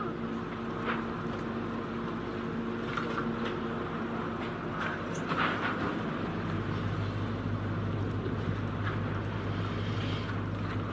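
A steady low hum over a bed of background noise, with a few faint soft clicks.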